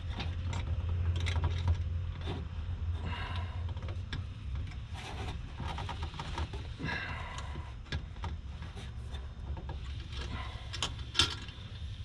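Irregular metallic clicks, knocks and scrapes as a steel sway-bar mounting bracket is bent and forced by hand around its bushing on the rear beam of a VW Mk4.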